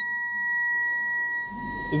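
A 1 kg aluminium plate levitating over an induction coil fed 800 A of alternating current at 900 Hz, giving a steady high-pitched whine. The plate is vibrating at twice the frequency of the current.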